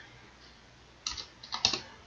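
Computer keyboard keystrokes: a few quick taps in two small groups, starting about a second in.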